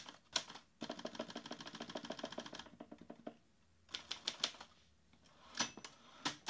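Manual typewriter keys striking, a few single strikes and then a fast, even run of about ten a second, followed by scattered keystrokes. Near the end there is a short bell-like ring.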